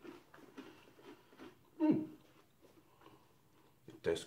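A person chewing a hard, crunchy oats-and-honey granola bar: faint, scattered crunches, with a short hum falling in pitch about halfway through.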